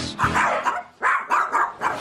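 Small dogs barking: four or five short barks in quick succession, with a brief pause near the middle.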